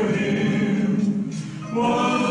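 A man singing a gospel song into a microphone, holding long notes, with a short break for breath a little past the middle before the next phrase.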